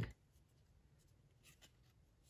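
Near silence with faint light ticks and rubbing about one and a half seconds in, from a trading card, a one-of-one printing plate, being picked up and turned over by hand.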